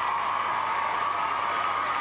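Arena crowd applauding and cheering in a steady wash of noise, with a steady high-pitched tone running through it.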